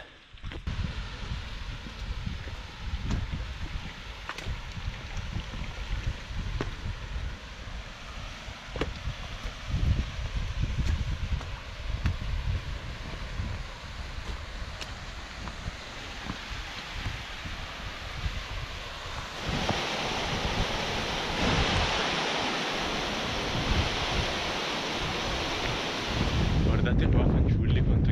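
Wind buffeting the microphone in gusty low rumbles over a steady hiss. About two-thirds of the way in, a louder, even rushing hiss takes over, and the rumbling swells again near the end.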